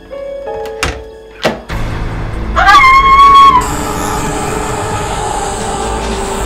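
Film soundtrack music with two sharp clicks about a second in, from the door lock being worked. Then comes a loud, high-pitched tone lasting about a second that rises at its start and drops off at the end.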